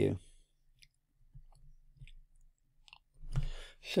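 A few faint, short ticks of a stylus tapping on a tablet screen while handwriting, spread through an otherwise quiet stretch; near the end a voice starts.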